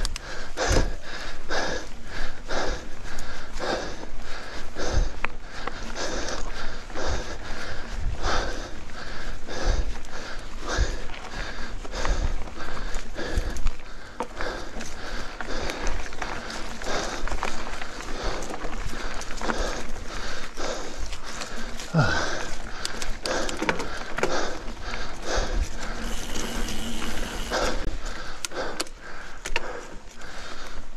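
Mountain biker's heavy, rhythmic breathing, about a breath a second, over steady trail noise from the bike. A short falling vocal groan comes about two-thirds of the way through.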